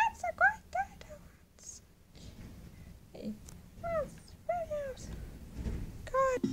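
High-pitched cat-like meows: a quick run of about five short mews in the first second, then a few more about four seconds in, the last one longer and falling in pitch.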